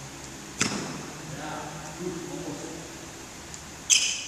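Two badminton racket strikes on a shuttlecock, each a sharp crack with a bright ringing of the strings: one about half a second in and a louder one near the end, some three seconds apart.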